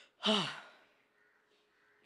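A woman's short breathy sigh, falling steeply in pitch.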